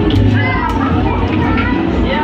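Busy shopping-mall ambience: background music with a repeating bass line and people's voices over it.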